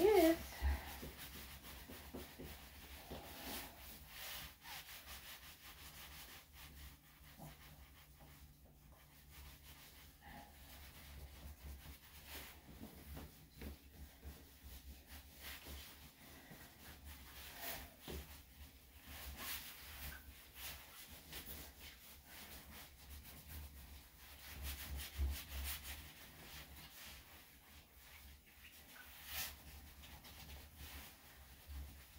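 Cotton towel rubbing a wet Yorkshire Terrier's coat dry: faint, scattered scuffing strokes over a low steady hum.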